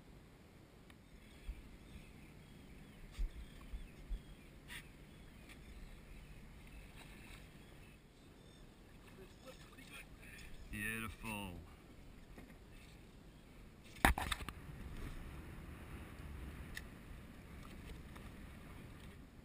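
A landed striped bass handled over the side of a small boat: scattered light knocks, a short wordless voice around eleven seconds in, and one loud sharp thump about fourteen seconds in, over low wind and water noise.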